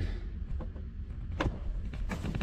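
Low steady background rumble, with a single sharp click about one and a half seconds in.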